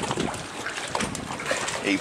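Seawater sloshing and lapping against a concrete harbour wall.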